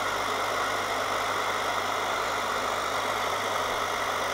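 Riello oil burner's motor, fan and fuel pump running steadily with a constant hum, but not firing: the fuel solenoid valve gets only 60 V instead of its 230 V, so it stays shut and no oil is sprayed.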